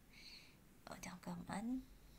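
A person speaking very softly, close to a whisper: a short hiss near the start, then a few faint muttered syllables in the second half that rise in pitch at the end.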